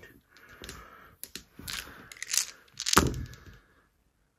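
A handful of plastic dice clicking and rattling together in the hand, then thrown into a felt-lined dice tray with one sharp, heavier hit about three seconds in.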